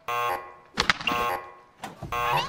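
Cartoon electronic button buzzing as it is pressed: two buzzy tones, the second starting a little under a second after the first, each cutting in sharply and fading, with a third starting near the end.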